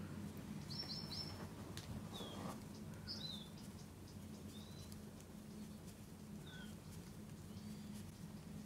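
Faint small-bird chirps: short, high calls that slide down in pitch, about eight of them in small clusters, with a quick run of three about a second in. A steady low hum runs underneath.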